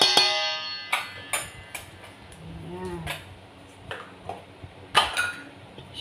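A metal spoon striking a stainless steel mixing bowl, which rings briefly after the first sharp knock. A few lighter clicks and taps follow, then another sharp knock about five seconds in.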